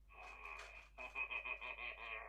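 Wonder Workshop Cue robot playing an electronic reaction sound through its speaker: a warbling, voice-like tone lasting about two seconds, pulsing rapidly in its second half.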